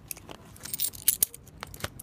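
A few light clicks and rustles as hands handle a small velvet-like tefillin-shaped cover and put something into it.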